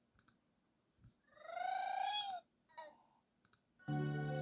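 A pair of sharp clicks, then a high drawn-out vocal sound lasting about a second that rises and falls in pitch, a few more small clicks, and music starting up just before the end.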